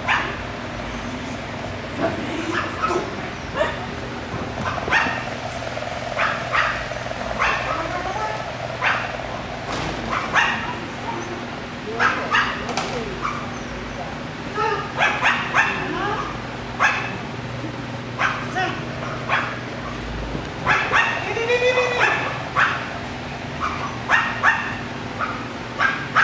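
A small dog barking again and again in short, high-pitched barks, often in quick runs of two or three.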